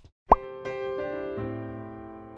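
A short, loud rising 'bloop' pop sound effect, then music: sustained keyboard notes coming in one after another to build a held chord.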